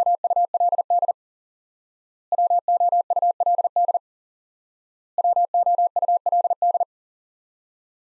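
Morse code beeps at one steady mid pitch, keying the word WOULD at 40 words per minute three times in a row. Each sending is a rapid burst of short and long beeps lasting under two seconds, with a pause of about a second between sendings.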